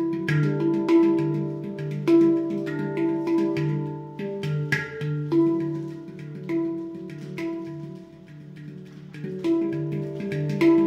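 Steel handpan played with the hands, notes struck one after another and ringing on over each other. The playing softens briefly about eight seconds in, then picks up again.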